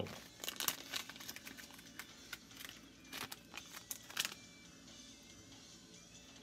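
Crinkling and small clicks of hands handling fly-tying materials as a hook is picked up, busy for about four seconds and then dying away.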